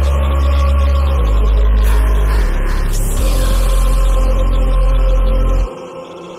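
Hip-hop backing track with a heavy bass line, a rising swoosh about two seconds in, and the beat cutting out shortly before the end.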